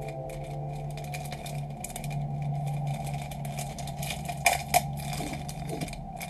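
Soft ambient background music fading out, leaving a steady low hum with light scraping and crackling on a craft table. Two sharp clicks come close together about four and a half seconds in.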